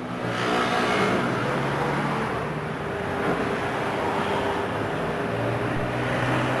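Steady road traffic noise: car engines running nearby with a low hum, without a break.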